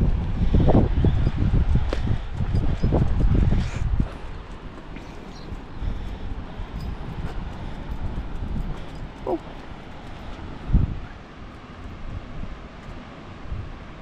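Wind buffeting the microphone, heavy for the first four seconds, then easing to a lighter steady rush. A short faint sound about nine seconds in and a single thump near eleven seconds.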